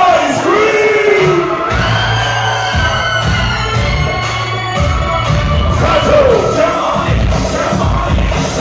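Live hip-hop concert music through a venue sound system, loud and heard from within the crowd: a heavy bass beat comes in about two seconds in, with voices from the crowd over it.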